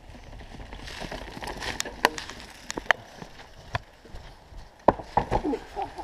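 Mountain bike riding a forest dirt trail: tyre rumble with irregular sharp clicks and knocks as the bike rattles over the ground.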